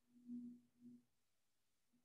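Near silence, with a faint low steady tone during the first second.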